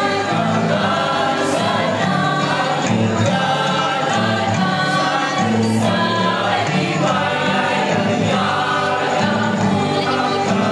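A mixed group of men and women singing a Christmas carol together as a choir, steadily throughout.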